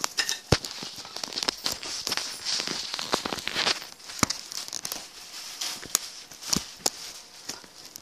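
Handling noise from the recording phone: a crackling rustle of the microphone rubbing, with irregular sharp clicks and knocks.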